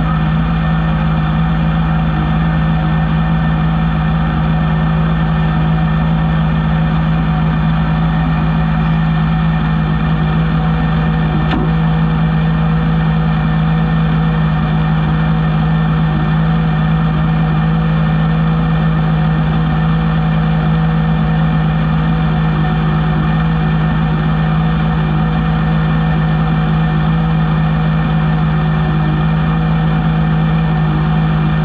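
Rallycross car's engine idling at a perfectly steady, even pitch, heard through the onboard camera, with one faint click a little over a third of the way in.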